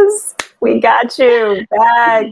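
A woman singing unaccompanied in gliding sung phrases, with a sharp finger snap about half a second in.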